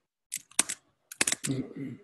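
Computer keyboard typing picked up by an open call microphone: a few quick clusters of keystroke clicks, then a short lower-pitched sound near the end.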